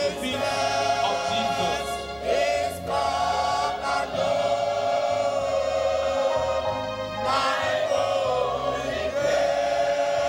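Mixed choir of men and women singing a worship hymn in harmony, holding long notes with short breaks between phrases.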